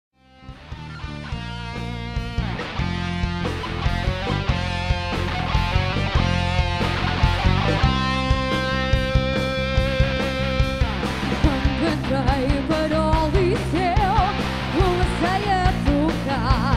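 Rock music fading in at the start: guitar chords over a steady drum beat, with a wavering lead melody line coming in about two-thirds of the way through.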